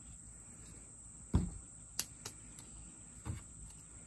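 Plastic tub being handled and its snap-on lid pressed on: a dull knock about a third of the way in, a sharp click about halfway and another dull knock near the end. Under it runs a steady high-pitched chirr of crickets.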